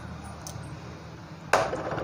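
Chopped capsicum tipped from a small steel cup into a glass bowl of beaten eggs, with one faint tap about half a second in, over a steady low hum. A voice starts speaking near the end.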